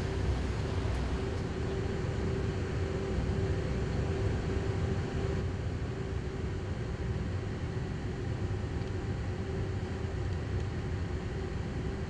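A steady low rumble and hiss with a faint constant hum, unchanging throughout: background room tone or machinery hum.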